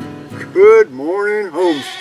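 A farm animal bleating loudly three times, each call wavering in pitch, as strummed guitar music fades out.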